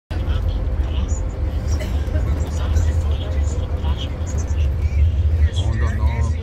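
Steady low rumble of a coach bus driving on a highway, engine and road noise heard from inside the passenger cabin.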